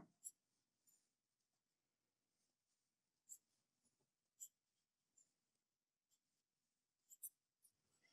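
Near silence, with a few faint ticks and light scratching from a crochet hook and yarn as chain stitches are worked.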